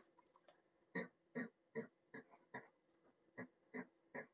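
Felt-tip whiteboard marker squeaking in short dabs as it dots the crossing points of a drawn grid, about two or three squeaks a second, with one short pause midway.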